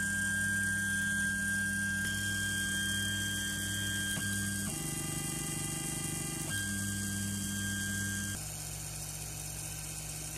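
Creality Ender 3 3D printer moving its axes: the stepper motors whine at steady pitches that jump to new notes several times as each move changes, over a steady fan hum. Near the end the whine stops and a lower, quieter hum carries on.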